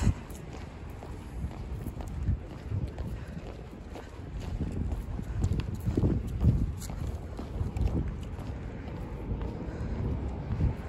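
Footsteps of a person walking on pavement, with a low rumble of wind on the microphone.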